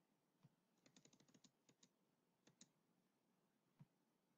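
Faint clicks from a computer keyboard and mouse: a quick run of about ten clicks about a second in, then a few single clicks.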